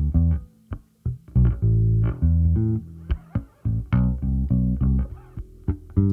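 Electric bass guitar, recorded direct (DI), playing a line of short plucked notes with gaps between them and a few brief clicks. The recording is run through a TDR Kotelnikov compressor.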